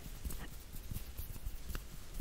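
Faint, sparse soft clicks and light skin rustle from slow hand movements close to the microphone.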